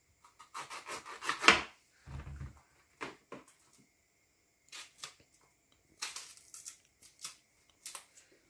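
Kitchen knife scraping and cutting the skin off plantains, in short separate strokes with pauses between, and a dull thump about two seconds in.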